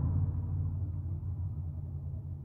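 Semi-truck diesel engine idling, heard inside the cab as a steady low rumble.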